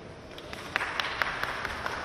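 A group of people clapping and applauding, starting about three-quarters of a second in, with a few sharp, loud claps standing out.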